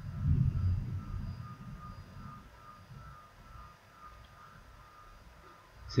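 A low rumble, loudest in the first second or so and then fading away, with a faint high tone coming and going behind it.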